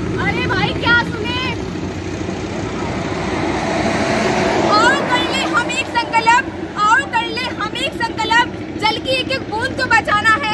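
Performers' voices chanting and calling out in a street play: a few calls near the start, then a quick run of high-pitched chanted calls from about five seconds in. A steady low rumble runs underneath.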